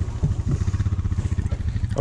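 Side-by-side UTV engine idling steadily, a low, even, rapid pulse, with a couple of light knocks about a quarter and half a second in.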